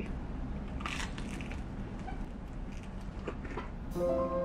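Bite and chew of crispy fried chicken coated in peanut butter. There is a burst of crunching about a second in and a few lighter crunches near the end.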